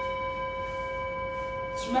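A single steady held musical note with overtones, a sustained drone that neither wavers nor fades.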